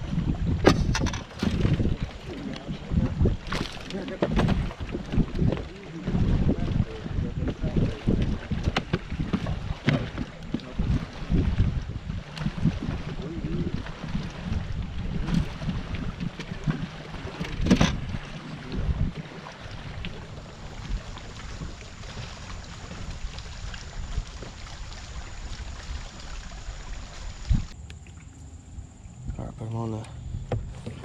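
Wind buffeting the microphone and water lapping against a bass boat's hull, an uneven rumble throughout. Scattered sharp knocks and clicks come from handling on the boat, the clearest about 1, 3.5, 4 and 18 seconds in.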